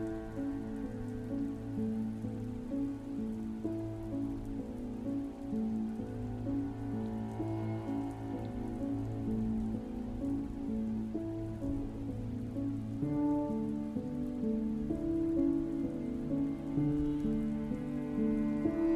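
Steady rain falling, layered with slow, soft piano and harp relaxation music of long held notes and chords; the harmony and bass shift about two-thirds of the way through.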